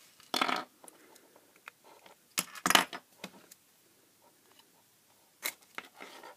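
Handling noise from a small plastic power-supply case and its circuit board being pulled apart on a bench: a handful of sharp clicks and light clatter, two of them close together near the middle.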